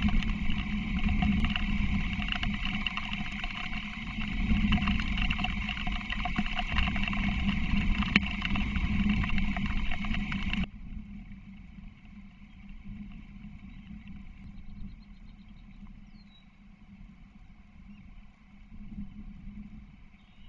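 Rain and wind noise on an outdoor osprey-nest camera's microphone during a summer rainstorm, loud and steady with small patters. It cuts off suddenly about halfway through, leaving a much quieter outdoor background.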